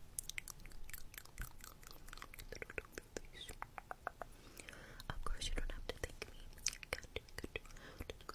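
Close-miked ASMR trigger sounds: a rapid, irregular run of small wet clicks and smacks with soft whispering, and a louder breathy rush about five seconds in.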